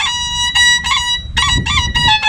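Homemade bowed stick fiddle playing high sustained notes, with a quick wavering ornament about halfway through.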